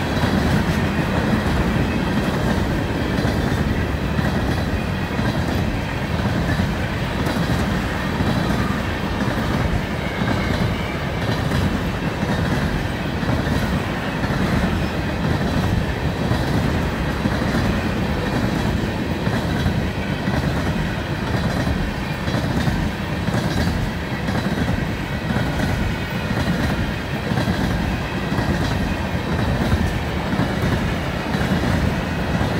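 Freight train cars, including tank cars, rolling past at close range: loud, steady noise of steel wheels on rail.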